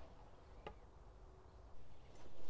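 Near silence: a faint low background rumble, with one small click about two-thirds of a second in and a brief soft noise just before the end.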